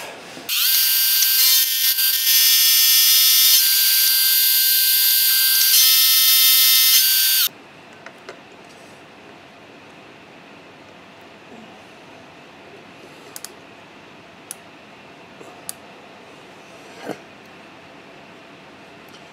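Milling machine taking a cut on the block: a loud, high-pitched machining sound that rises briefly in pitch as it starts, runs for about seven seconds and stops suddenly. A few faint clicks follow as the micrometer is handled.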